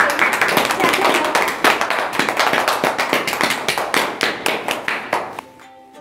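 A small group of children clapping their hands in applause, fading out about five seconds in.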